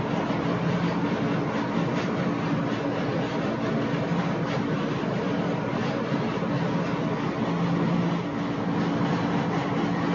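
Steady machine hum with an even hiss and two low tones held throughout.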